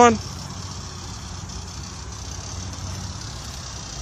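Minivan engine idling close by, a steady low hum.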